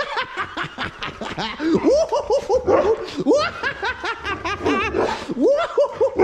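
Excited Siberian huskies whining and yipping: a string of short calls that rise and fall in pitch, one after another, as they wait to go out on a walk.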